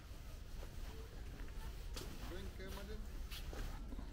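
Faint, indistinct voices of people talking some way off, over a steady low rumble of wind on the microphone, with two sharp clicks partway through.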